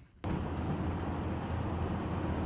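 Steady low rumble of a car driving on a road, engine and tyre noise heard from inside the cabin. It cuts in abruptly about a quarter second in and holds level throughout.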